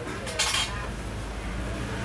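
A brief clatter of hard objects being handled, about half a second in, over a faint low steady hum.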